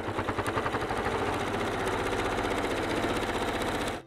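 Elna sewing machine running at a steady fast speed, topstitching, with a rapid even stitch rhythm that stops abruptly at the end.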